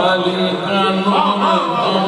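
A man's voice reciting Urdu poetry in a sung, chant-like style, holding a steady long note with a wavering melody above it.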